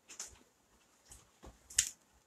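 Soft footsteps on a hard floor: a few brief scuffs, with a sharper click near the end.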